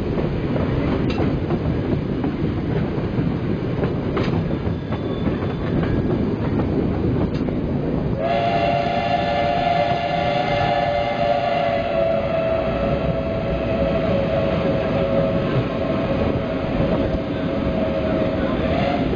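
Passenger train rumbling over the station approach, heard from an open carriage window, with a few sharp clicks of wheels over rail joints and points. About halfway through a long, steady two-note tone starts and holds to the end.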